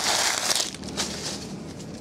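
Foil trading-card pack wrapper crinkling as it is grabbed and moved. A loud rustling burst lasts about half a second, then a light tap follows about a second in.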